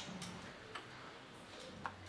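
Quiet classroom room tone with a few faint, irregular clicks, the sharpest one near the end.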